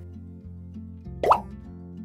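A short cartoon "plop" sound effect with a quick upward pitch sweep, about a second and a quarter in, marking the wooden puzzle piece dropping into its slot, over steady light background music.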